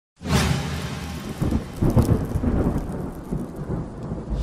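Thunder sound effect: a loud crackling rumble with a heavy low end. It swells again about one and a half and two seconds in, then eases off.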